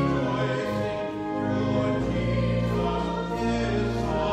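Two women singing a hymn together in long held notes over sustained low accompaniment notes.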